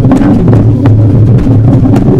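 Loud, dense improvised noise music: a steady low drone with a second band above it, peppered with irregular crackles and clicks.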